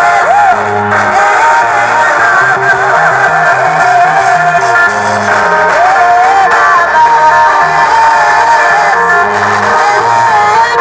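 Church choir singing to band accompaniment with a steady bass line, played loud through PA loudspeakers.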